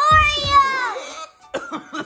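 A high-pitched voice shouting "Oreos!", drawn out for about a second and falling in pitch at the end, followed by a few short clicks and knocks.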